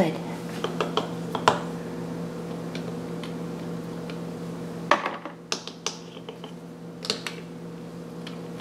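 Light clicks and knocks of small plastic toy figures and dollhouse furniture being picked up and set down, a few scattered taps over a steady background hum.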